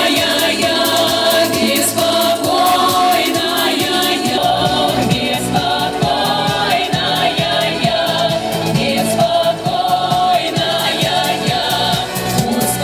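Amplified women's singing over a musical backing track, with a steady beat coming in about four seconds in.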